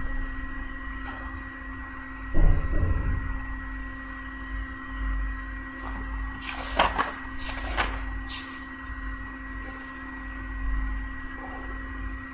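Steady electrical hum with a thin whine. There is a knock about two and a half seconds in, and a few short rustles or scrapes in the middle.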